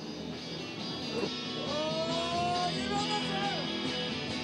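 Background music with guitar, its melody sliding in pitch, fading in over the first second or so.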